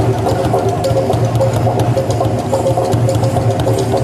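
Live indigenous percussion music, ringing gong tones over a quick, steady drum beat, played without pause.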